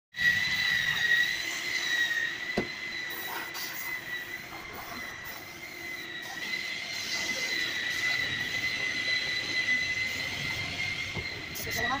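Compressed air whistling steadily through a paint spray gun and its air hose, a high even tone over a hiss. A single sharp knock comes about two and a half seconds in.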